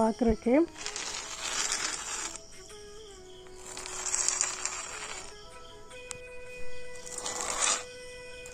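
A metal kolam tool scraping across the floor as it lays down lines of kolam powder, in three strokes of a second or so each. Faint background music plays under it.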